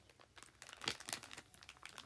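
A sheet-mask packet being handled, its wrapping crinkling in short, irregular crackles, loudest about halfway through.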